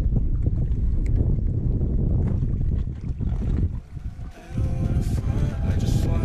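Wind rumbling on the microphone over water around a boat, with a few faint ticks. Background music comes in about three-quarters of the way through, after a brief drop in the rumble.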